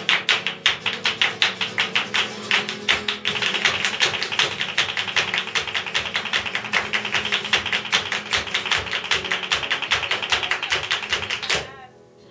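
Flamenco palmas: several people clapping hands in a fast, even rhythm over a flamenco guitar. The clapping thickens a few seconds in and stops suddenly near the end.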